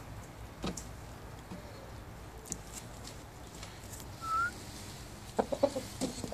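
Game rooster calling: a single short rising squeak a little past the middle, then a quick run of short low clucks near the end.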